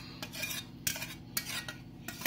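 Wire whisk and steel mixing bowl clinking as chocolate cake batter is scraped out into a cake container: a few light metallic clicks.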